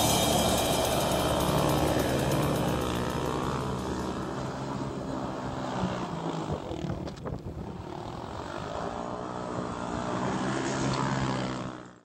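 ATV (quad bike) engine revving and running under load, its pitch rising and falling; it fades down about halfway through, builds again, then cuts off suddenly at the end.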